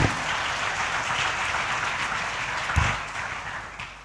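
Audience applauding in a large hall after a lecture, steady, then dying away near the end. There is a sharp low thump at the start and another about three seconds in.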